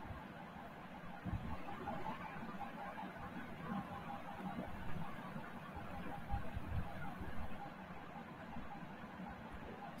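Faint, steady background noise with small irregular fluctuations and no distinct event.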